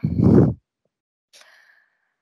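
A woman sighing: one short, loud exhale that blows onto the microphone, then near silence.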